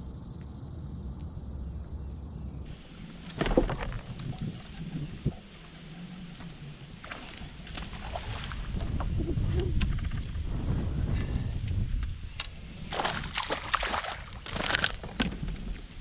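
A hooked largemouth bass splashing and thrashing at the water's surface as it is fought to the boat, in several bursts with the busiest near the end, over a low rumble of wind on the microphone.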